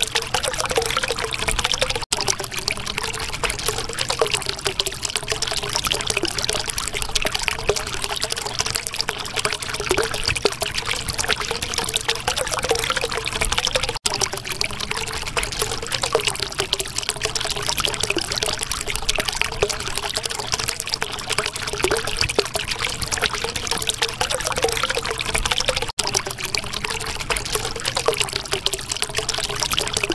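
Steadily flowing water, trickling and pouring without a break. It dips out for an instant about every twelve seconds.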